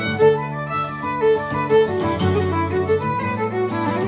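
Fiddle and steel-string acoustic guitar playing an Irish jig in D: the fiddle carries the melody while the guitar strums chords underneath.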